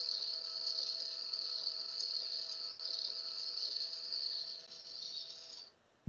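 SpinRite arrow crester spinning a wooden arrow shaft on its rollers, a steady high whir with a faint low motor hum, while a brush is touched to the turning shaft to lay a thin paint line. The whir fades and cuts out just before the end.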